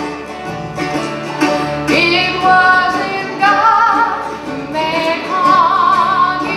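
Live bluegrass band playing: mandolin, banjo, acoustic guitar and upright bass, with a sung melody line wavering over the picking.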